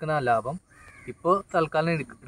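A man speaking, with a short pause about a second in where a crow caws faintly.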